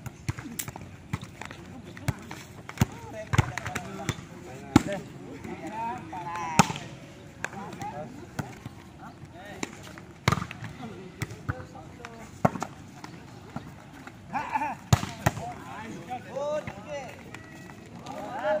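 Sharp smacks of a volleyball being struck by hand and bouncing on a concrete court, a dozen or so scattered through, with players' voices calling out between them.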